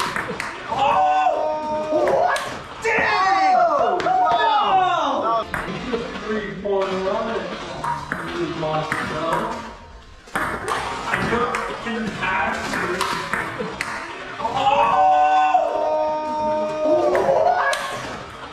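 Table tennis rally: the plastic ball clicking sharply and repeatedly off paddles and table throughout. Music and voices run over it, loudest near the start and again near the end.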